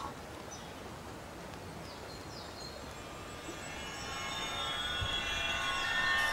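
Quiet outdoor background noise with a few faint bird chirps in the first half. About three and a half seconds in, a cluster of steady high tones fades in and grows louder toward the end.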